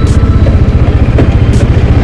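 Bajaj Dominar 400's single-cylinder engine running at low revs, with a fast, even pulsing beat.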